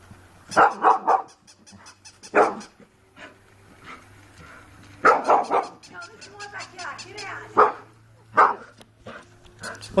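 Bull terrier barking at a robot toy dog in short sharp barks. Three come in quick succession about half a second in, one follows about two seconds later, a burst of several comes around the middle, and single barks are spaced out toward the end.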